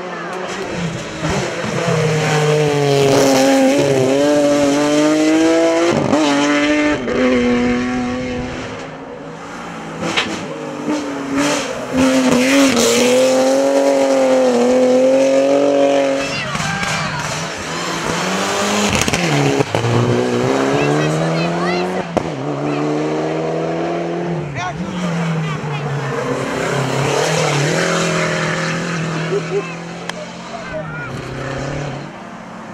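Engines of hillclimb race cars at full throttle up a mountain road, one car after another: the engine note rises through the revs and drops at each gear change. About 16 s in one car's note falls off sharply as it lifts for a bend.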